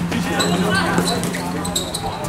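A football being kicked and bouncing on a hard outdoor pitch during a small-sided game, with players' voices and a steady low hum underneath.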